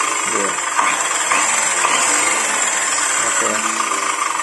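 Orion electric circular saw with a Makita 40-tooth blade running free at full speed with no load, a steady high-pitched whine: a test spin of the newly fitted blade.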